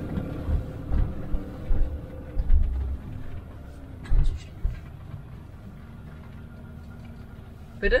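Motorhome engine and cab rumble heard from inside as the van rolls slowly across a rough car park, with a few low thumps and rattles in the first half, settling to a steadier low hum toward the end.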